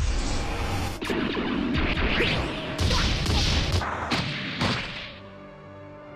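Anime fight sound effects: a rapid run of hits and crashes over loud, dense noise for about five seconds. Near the end this drops away, leaving quieter background music with held notes.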